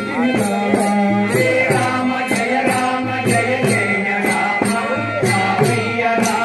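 Devotional bhajan singing of a Rama name-chant, with voices carrying the melody and small brass hand cymbals (talam) clashing in a steady beat about three times a second.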